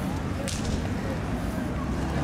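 Outdoor street ambience: a steady low rumble with faint distant voices, and one brief sharp swish about half a second in.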